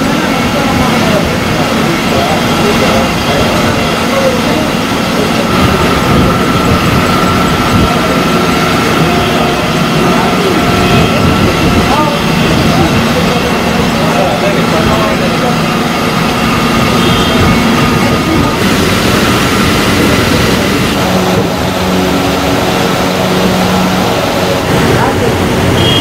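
Indistinct voices over a constant, engine-like machine hum, steady and loud throughout.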